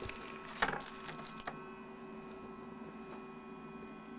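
Faint handling noise of medals in clear plastic zip bags: a few brief rustles and knocks, the loudest about half a second in, over a steady faint hum.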